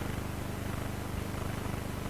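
Steady low electrical hum with a fine, rapid buzzy flutter, the background hum of the room's sound system heard through an open microphone.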